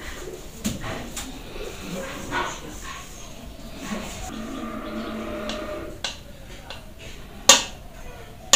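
Light knocks and shuffling, with a drawn-out animal call in the background lasting about a second, starting about four seconds in. Near the end comes one sharp metallic clack from an aluminium cooking pot and its lid being handled.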